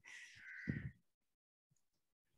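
A single faint, harsh call lasting under a second, with no speech.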